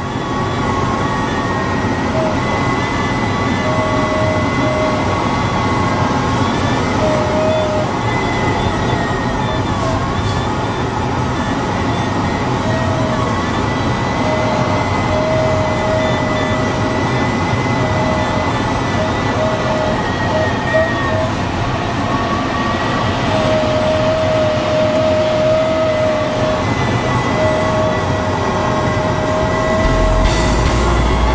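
Steady rush of air over a DG-300 glider's canopy in flight, heard inside the cockpit. Faint high tones come and go and waver slightly in pitch.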